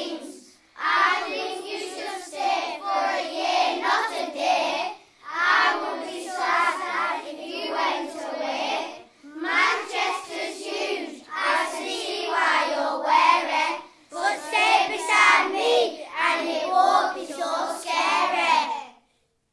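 Young voices singing a rhyming song in four phrases of about four to five seconds each, with short breaks between them.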